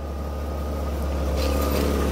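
1995 Chevrolet Lumina van's 3.1-litre V6 idling steadily, running again on a new distributor with its harness plug now the right way round.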